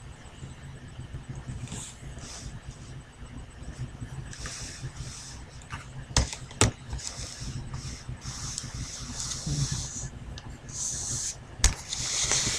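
Handling noise on a webcam microphone as the camera is moved about: short rustles and a few sharp knocks, two about six seconds in and one near the end, over a steady low hum.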